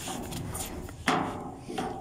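A knock about a second in, followed by a short scrape, as shoes strike and scuff a rusty metal playground slide chute while a person climbs up it.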